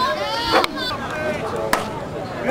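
Players and onlookers talking in the background, with two sharp knocks about a second apart.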